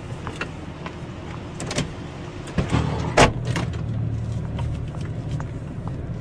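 Car interior sounds: a low engine and road rumble that grows louder about two and a half seconds in, with a few small clicks and one sharp knock a little after three seconds.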